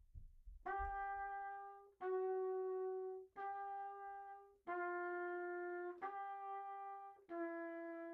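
Trumpet playing a slow interval exercise: long, steady, separately tongued notes of about a second and a half each, a repeated upper note alternating with a lower note that steps down a little each time, heard through a video call.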